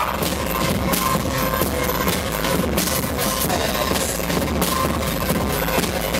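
A live rock band playing loud, dense music on electric guitar and drum kit.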